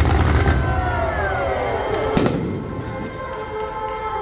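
Fireworks launching in a rapid volley of cracks at the start, then a single sharp bang about two seconds in, over the show's music soundtrack.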